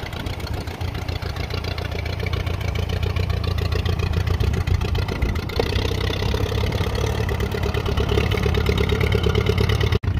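Allis-Chalmers WD tractor's four-cylinder engine running steadily as the tractor drives along in gear, gradually growing louder. The carburettor is in need of major work.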